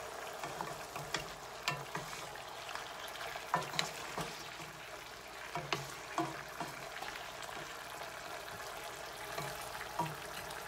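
Chicken pieces sizzling steadily in a skillet in the juices they have given off, stirred with a wooden spatula that scrapes and knocks against the pan at irregular moments.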